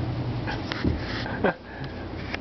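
St. Bernard puppy tugging at a towel: a few sharp clicks and scuffles, then a short dog vocal sound falling in pitch about three-quarters of the way in.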